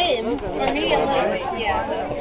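Indistinct chatter: voices talking at once, no words clearly made out.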